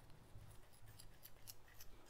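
Faint, scratchy strokes of a Pearl SBC 404 shaving brush working shaving lather across the face, several short strokes at uneven intervals.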